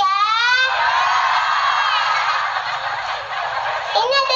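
A young girl's high voice through a microphone, sliding upward and then held as a long, raspy shriek.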